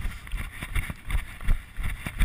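Running footfalls on a dirt trail heard through a chest-mounted action camera: a regular low thudding about three times a second, with wind on the microphone.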